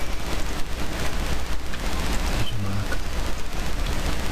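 Loud steady rushing noise with a low hum beneath it.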